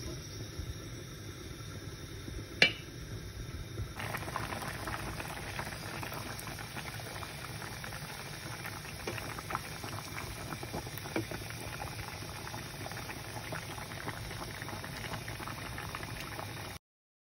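Fish curry with hyacinth beans boiling in a pan, the broth bubbling and crackling steadily, fuller from about four seconds in. A single sharp click about two and a half seconds in.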